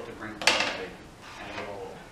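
Indistinct voices with one sharp knock about half a second in, which rings away briefly.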